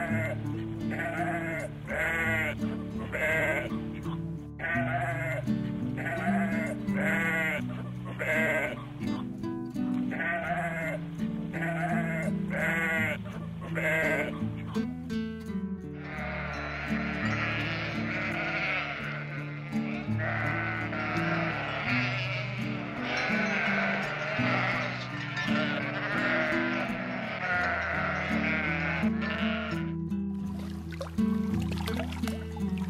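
Sheep bleating over background music: first a run of short bleats, about two a second, then, from about halfway through, many sheep bleating at once in a dense overlapping chorus.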